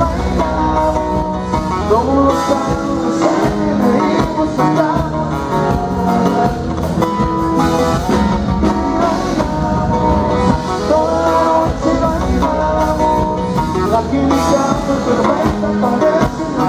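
Live Tejano band playing a song: button accordion, guitar and drums, with a singer.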